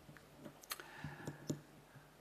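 A few faint, short clicks close to the microphone during a pause in speech.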